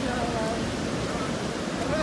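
Steady wash of ocean surf on the beach, an even rushing noise without a break.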